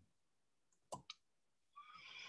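Near silence broken by two faint clicks close together about a second in: the click of the presenter's computer control as the slide is advanced.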